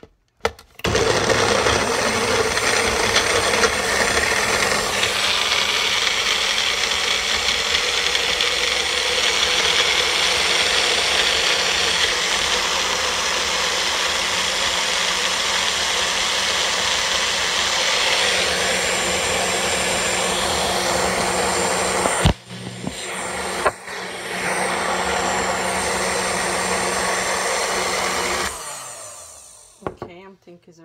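Magic Bullet personal blender running, blending a fruit smoothie. It runs steadily for about twenty seconds, stops briefly with a click, then runs again for a few more seconds before cutting off.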